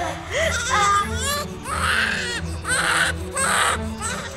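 A newborn baby crying in repeated short wails, about one a second, just after being born. A low, steady music score plays beneath.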